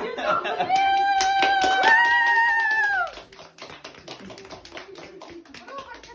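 A long, high-pitched excited squeal held for about two seconds, stepping up in pitch partway, over a small group clapping; the squeal cuts off and the clapping and murmuring carry on more quietly.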